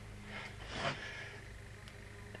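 Quiet room tone with a steady low hum, and a soft breath about a second in.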